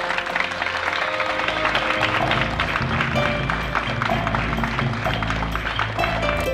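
Music playing with an audience applauding over it: a dense, steady clatter of clapping mixed with held musical notes.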